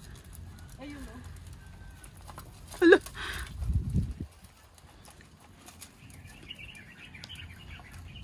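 Shih Tzu puppies feeding together from a metal dish, with light scuffling and pecking sounds at the bowl. About three seconds in there is one short, loud high cry that falls steeply in pitch, followed by a brief low rumble.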